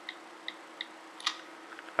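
iPhone 4S passcode keypad clicks: three short, faint ticks about a third of a second apart, then a louder sharp click a little past halfway as the phone unlocks.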